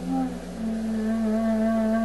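Clarinet slurring into a new low note about half a second in and holding it steady.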